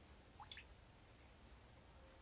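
Near silence: room tone with a faint low hum, and one faint, short rising chirp about half a second in.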